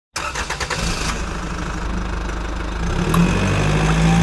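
Motor vehicle engine running, loud, with a quick series of sharp clicks in the first second and a steady low hum that rises in pitch a little past three seconds in.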